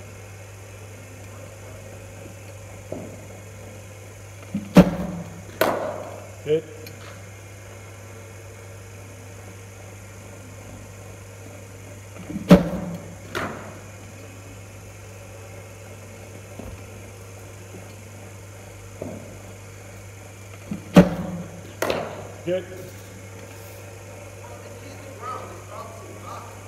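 Cricket ball from a bowling machine played with the bat three times, about eight seconds apart: each delivery gives a sharp crack followed by a second knock about a second later. A steady low hum runs underneath.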